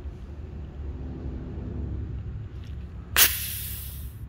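A compression tester's pressure-release valve hisses sharply for just under a second, about three seconds in, bleeding off the held reading of about 170 psi on the last cylinder. A steady low hum runs underneath.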